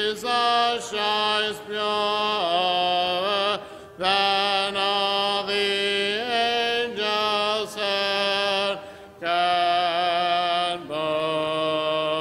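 A congregation singing a hymn a cappella, with no instruments. The voices sing held notes in phrases broken by short breaths, then sustain a long note near the end.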